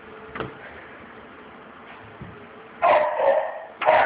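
A dog barking twice, two short loud barks about a second apart near the end.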